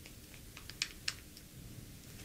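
Small, sharp plastic clicks as the screw cap of a small plastic bottle is twisted open by hand. The two loudest clicks come close together about a second in, among fainter ticks.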